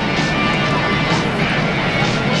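Steady crowd din in a domed baseball stadium, with music from the public-address system.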